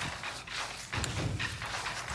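Soft footsteps on grass, a few faint irregular thuds.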